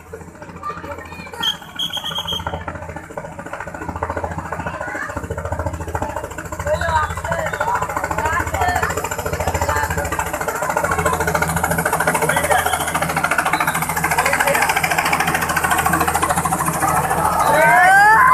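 Small two-bladed light helicopter approaching and descending to land, its pulsing rotor beat growing steadily louder. A crowd shouts and calls over it, loudest near the end.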